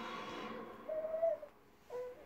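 A baby's short vocal sound, held at one pitch for about half a second, about a second in.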